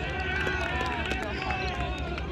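Indistinct shouting and calling from players and onlookers at a field game, over a low steady rumble.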